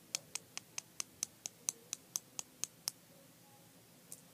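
A run of about thirteen sharp, evenly spaced clicks, roughly four a second, stopping about three seconds in.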